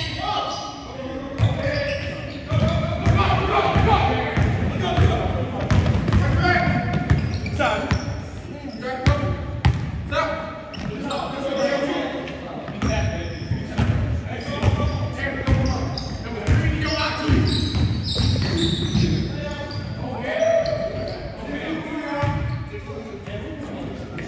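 Basketball bouncing on a hardwood gym floor during a pickup game, with sharp knocks of the ball scattered through, under players' indistinct voices calling out across the court.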